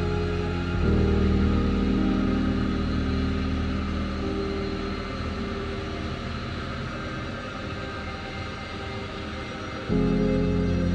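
Background music of slow, sustained chords: a new chord enters about a second in and slowly fades, and another begins right at the end.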